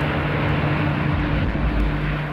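Boeing 747's four jet engines at takeoff power as the airliner climbs out: a loud, steady rushing roar with a low hum beneath it.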